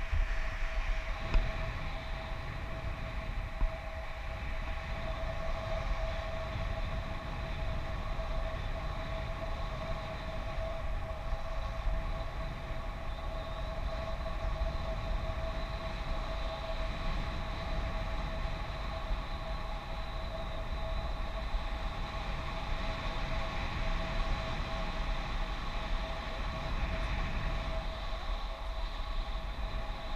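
Wind rushing over the camera's microphone during a tandem paraglider flight, a steady rumble, with a steady high-pitched tone running through it.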